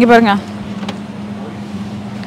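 A steady low hum from refrigerated display cases, one constant tone, heard clearly once a woman's voice stops shortly after the start.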